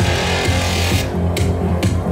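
Electronic dance music played loud over a club sound system, with a steady kick-drum beat. A rising wash of noise builds and cuts off suddenly about halfway through, leaving hi-hat hits about twice a second over the beat.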